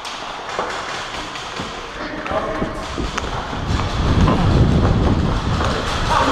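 Movement noise from a head-mounted camera on a moving airsoft player: footsteps and gear rubbing, with scattered light clicks and a heavy low rumble building in the second half.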